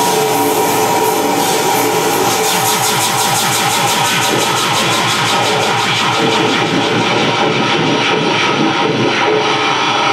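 Loud live experimental noise music: a dense, harsh wall of electronic noise with a rapid, engine-like pulsing throb, several beats a second, that sets in about two seconds in.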